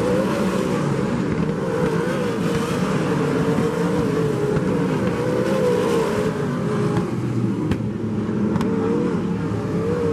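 A field of winged sprint cars racing on a dirt oval, several V8 engines at high revs, their notes wavering up and down as they go off and on the throttle through the turns. A few sharp clicks come near the end.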